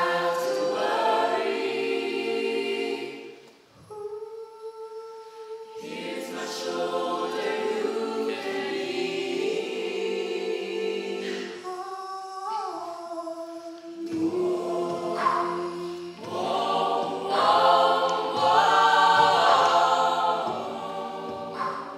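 Mixed-voice a cappella group singing in close harmony, with no instruments. The singing breaks off briefly about four seconds in, comes back on a held chord, and swells louder and fuller near the end.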